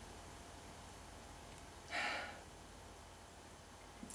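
One short sniff at the open neck of a cider bottle, about two seconds in, against faint room tone.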